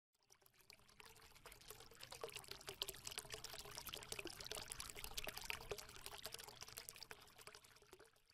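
Quiet intro sound effect of a channel logo animation: a dense fizzing crackle like liquid being poured. It swells over the first two seconds, holds, and tapers away at the end.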